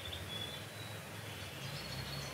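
Quiet background with a faint low hum and a few faint, brief high-pitched chirps.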